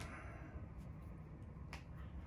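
A finger joint being pulled in a chiropractic hand adjustment, giving one sharp pop about three-quarters of the way through, with a couple of fainter ticks before it, over a low, steady room hum.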